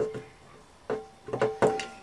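A woman's pained 'ow' from a hot-glue burn trailing off, then after a short pause a few more brief pitched cries or sounds.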